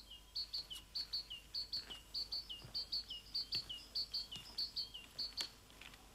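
Small songbird chirping faintly: short high double chirps, each followed by a lower dipping note, repeating about twice a second and stopping shortly before the end.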